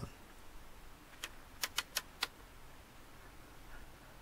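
Five light, sharp metallic clicks in quick, uneven succession a little after a second in, from hand work on a Webster mainspring winder holding a clock mainspring; otherwise only faint background.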